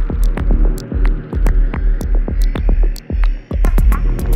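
Progressive psytrance music: a pulsing, throbbing bass line under steady hi-hat ticks, with a sweep slowly rising in pitch. The bass drops out briefly about three seconds in and comes back just before the end.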